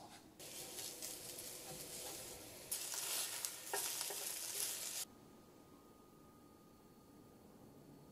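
Shredded zucchini mixture sizzling as it fries in a nonstick pan, with a utensil stirring it. The hiss grows louder about three seconds in and cuts off suddenly about five seconds in, leaving quiet room tone with a faint steady hum.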